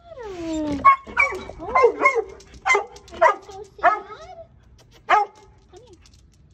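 A dog whining with a falling pitch, then giving about eight short, high barks and yelps in quick succession, the last one a little apart about five seconds in.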